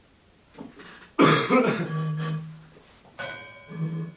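Non-speech throat sounds from a man: a sudden loud, harsh cough-like burst about a second in that trails into a held low voiced sound, then a shorter burst near the end.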